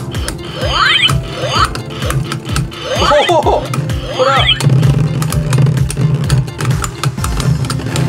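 A battery-powered light-up toy spinning top playing its electronic sound effect, a swooping tone repeated every second or so, which stops about halfway through. Under it is a steady low spinning hum and clicks as the top and a Beyblade Burst top spin and knock together in a plastic stadium.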